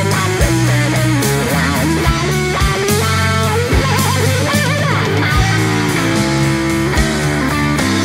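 Live power trio playing a slow blues: a lead electric guitar plays single-note lines with bends and vibrato over bass guitar and drums.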